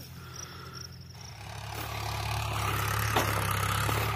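Farm tractor engine running, growing steadily louder from about a second in as the tractor comes closer across the field for sowing.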